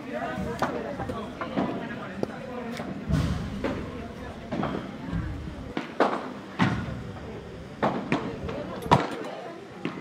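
Padel rally: sharp cracks of the ball struck by paddles, and off the court's glass walls, about one every second, with the loudest hit near the end, over background voices.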